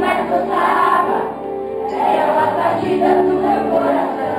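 A group of children singing a Portuguese-language song together, with instrumental accompaniment under the voices.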